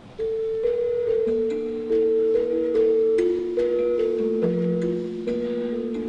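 Javanese gamelan gendèr, a bronze metallophone with thin bars over tube resonators, played solo with padded mallets: a slow run of ringing notes, several sounding together as each one is left to sustain.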